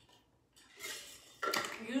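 A hand-held water bottle being handled, with its cap clinking against it. There is a soft handling sound, then a sharper clink about one and a half seconds in.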